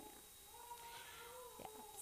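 Near silence: room tone, with a faint held tone lasting about a second in the middle.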